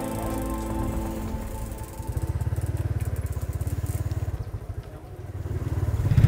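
Background music fading out, then a motorcycle engine running with a rapid, even pulse for about two seconds before it fades away.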